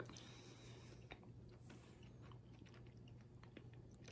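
Faint chewing of a bite of Reese's milk chocolate peanut butter egg, heard as soft scattered mouth clicks over near silence.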